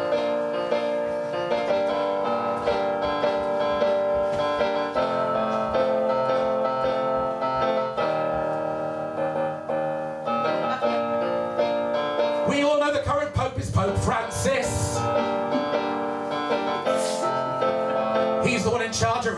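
Electronic keyboard on a piano sound playing a song introduction: chords held and changed at a steady pace.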